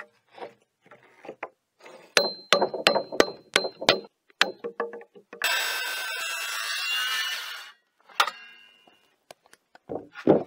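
A hammer striking a chisel about eight times in quick succession, each blow sharp with a metallic ring, as a notch is cut into a timber post. Then a handheld circular saw cuts through a wooden block for about two seconds.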